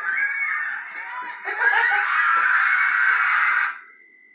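A group of people laughing and shrieking together, louder in the second half, cutting off suddenly just before the end and leaving a faint steady high-pitched tone.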